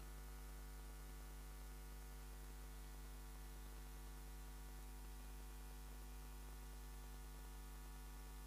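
Faint, steady electrical mains hum from a public-address sound system. It is a low, unchanging buzz with no other sound over it.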